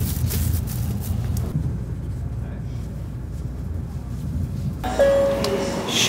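Low steady rumble inside a Shinkansen bullet-train carriage. Near the end it changes abruptly to platform sound with a steady electronic tone.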